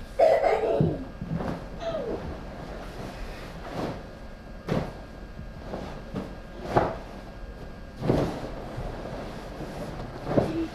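Dull thumps and knocks on a staircase, about five spread over the seconds, as children shove a large vinyl-covered bean bag down the stairs and clamber onto it.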